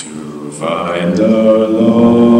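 A cappella group singing wordless, chant-like sustained notes in close harmony. After a brief hiss at the start, the full group comes in about half a second in and holds a swelling chord.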